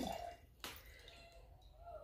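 Alcohol poured from a small ceramic cup into water in a glass jar: a short, faint pour and drips, with one sharp click about half a second in.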